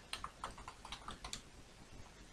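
Faint computer keyboard typing: a quick run of keystrokes in the first second and a half, then it thins out.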